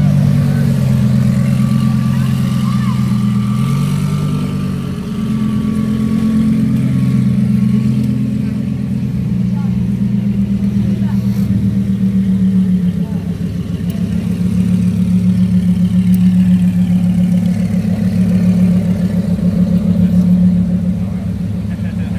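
Lamborghini Huracán V10 engine running at low revs, a loud steady low drone whose pitch steps up and down a few times as the car creeps along.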